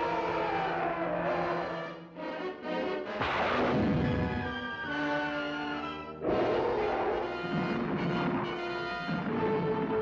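Dramatic orchestral trailer music with timpani, with a loud crash about three seconds in.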